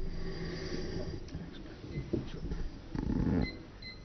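Handling noise from a tabletop gooseneck microphone being picked up and moved on its stand, heard through the microphone itself as low rumbles and bumps. The loudest rumble comes about three seconds in.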